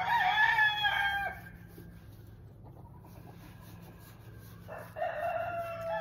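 A rooster crowing twice: one crow at the very start, lasting over a second, and another about five seconds in.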